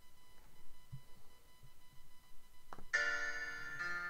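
A single click, then about three seconds in a notation program's synthesized piano playback begins: a soft opening chord followed by a second one.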